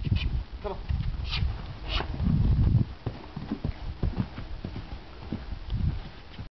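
Hoofbeats of a ridden red line-back dun gelding on a packed dirt arena, as a series of irregular dull thumps and knocks.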